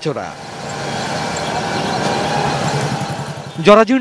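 Street traffic noise: vehicle engines running, a steady mix of pitched engine hum over a haze of road noise that slowly grows louder.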